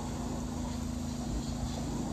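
Steady rush of water from a rock waterfall spilling into a swimming pond, with a low steady hum underneath.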